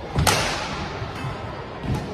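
A badminton racket hits a shuttlecock once with a sharp crack about a quarter second in, echoing briefly in the hall. A low thud of a shoe landing on the court follows near the end as the player lunges.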